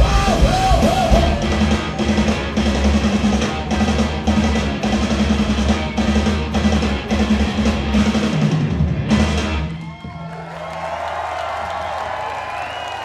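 Live punk rock band playing loudly: pounding drums, distorted electric guitar and bass, with a shouted vocal in the first second. The song stops sharply about ten seconds in, and the crowd cheers and applauds.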